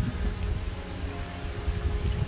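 Steady hiss of light rain falling around a shack with a corrugated-metal and tarpaulin roof, with a low rumble of wind and handling noise on the microphone as the camera moves.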